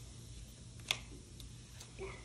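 One sharp click about a second in, then two fainter ticks, from hands gripping and working a fizzing LOL Surprise seashell toy in water, trying to crack its shell open.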